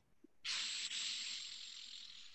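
A steady hiss of air or noise, starting about half a second in and slowly fading over about two seconds.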